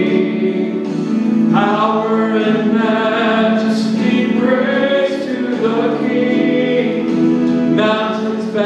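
A man singing a gospel song into a handheld microphone, holding long notes in phrases, over a steady musical accompaniment.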